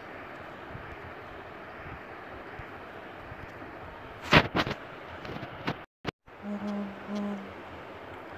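Faint steady hiss of room tone through a phone microphone, with a quick cluster of sharp clicks a little past the middle and a short low hum near the end.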